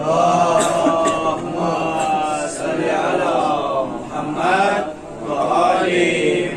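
A man's voice chanting slowly and melodically into a microphone, in the mournful style of a masaib elegy, with long held notes in two phrases and a brief break about four seconds in.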